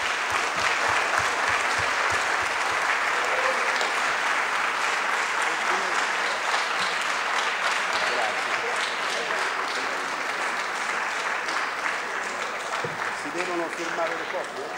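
Audience applauding steadily for the whole stretch, easing off slightly near the end, with a few voices faintly heard over the clapping.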